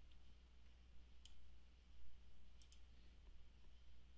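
Faint computer mouse clicks: one about a second in, then a quick double click a little past the middle, over a low steady hum.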